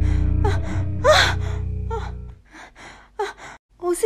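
A woman gasping and whimpering in fright as she wakes from a nightmare, the loudest gasp about a second in, then short, quick breaths. Under the first part a low, droning music track plays and stops about two and a half seconds in.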